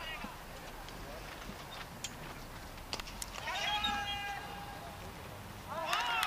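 A long, high-pitched shout on the cricket field, held steady for over a second from about the middle, with a sharp knock just before it, over faint open-air background.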